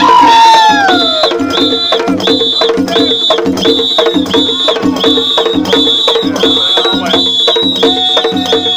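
Percussion with a steady beat and a high, ringing metallic stroke repeated a little more than once a second. A loud call falls in pitch over the first second.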